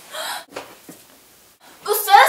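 A short breathy gasp just after the start, then near the end a girl's voice comes in loudly.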